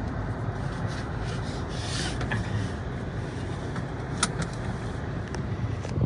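Steady low rumble of a car's engine and road noise heard from inside the cabin, with a few light clicks and a sharp click about four seconds in.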